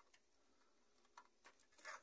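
Near silence with a few faint clicks from a hand fitting a test lamp's ground clip onto a battery ground bolt.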